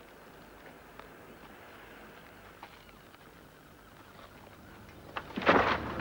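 Faint, steady outdoor background noise, then a sudden loud, rough burst of sound about five seconds in.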